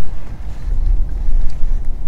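Wind buffeting a camera microphone: a low, uneven rumble, strongest around the middle.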